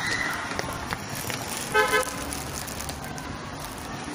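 A vehicle horn sounds two short toots in quick succession a little under two seconds in, over steady street noise.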